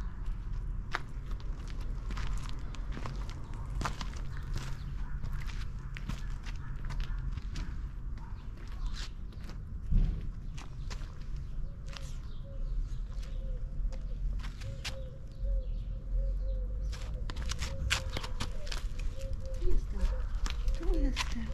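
Footsteps on brick paving and loose gravel, with scattered sharp crunching clicks over a steady low rumble, and a single louder thump about halfway through.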